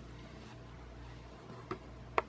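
Quiet room tone with a steady low hum and a single faint click near the end.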